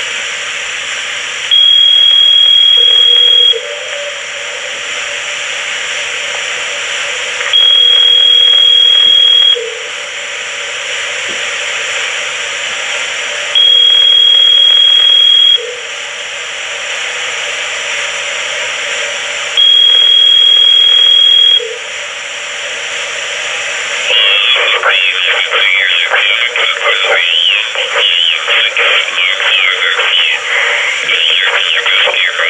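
Uniden Bearcat scanner's speaker playing the intercepted signal from a Uniden DX4534 cordless phone in voice-scramble mode: a hissy, narrow radio sound with a high steady tone four times, about two seconds on and four off, in the cadence of a ringing tone. From about 24 seconds in, garbled, unintelligible scrambled speech follows.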